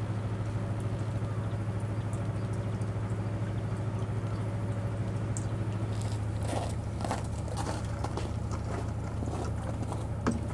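Boat engine idling with a steady low hum. From about six seconds in, scattered crackling and crunching clicks join it.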